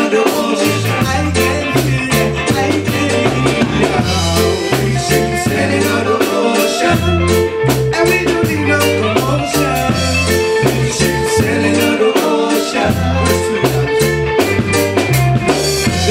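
Live band playing an instrumental passage in a reggae-style groove: a drum kit with rimshots over a repeating bass line, with keyboard and electric guitar.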